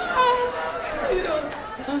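A man's voice making wordless, drawn-out vocal noises that imitate the hubbub of an excited crowd, followed near the end by the start of ordinary speech.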